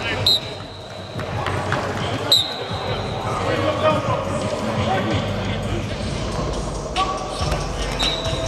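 Background voices and drill noise in a large indoor football practice hall. A few brief, high squeaks cut through, about three in all.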